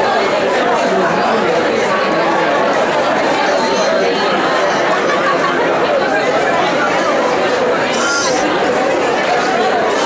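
Crowd chatter: many people talking at once, their voices overlapping at a steady level.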